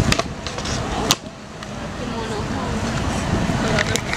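Skateboard wheels rolling over stone paving slabs, a continuous gritty rumble, with a sharp clack about a second in, after which the rumble drops briefly and builds again.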